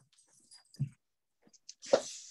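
A pause between sentences: a short low murmur from a man's voice about a second in, then a brief hiss of breath just before he speaks again.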